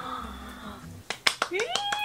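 A few sharp taps about a second in, then a young woman's high-pitched excited squeal that rises and then holds briefly near the end.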